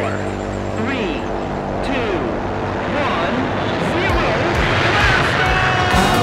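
Cartoon rocket-launch sound effect: a rushing engine noise that builds and grows louder over the last couple of seconds as the rocket lifts off, heard under a countdown voice and music.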